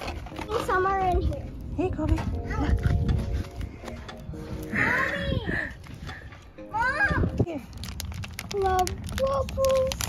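High children's voices calling and exclaiming in short bursts, over light background music, with a steady low rumble of wind on the microphone.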